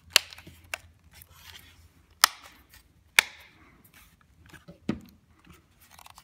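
Plastic back cover of a Honda Insight Gen 1 instrument cluster snapping onto its tabs as it is pushed down: about five sharp plastic clicks, the loudest near the start and about two and three seconds in.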